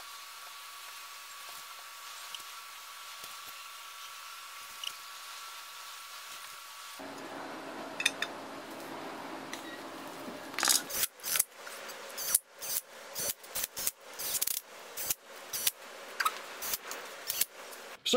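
Faint steady hiss at first, then from about eleven seconds an irregular run of sharp metal clicks and taps, one or two a second, as the lower sump pan is fitted and bolted onto the aluminium engine block.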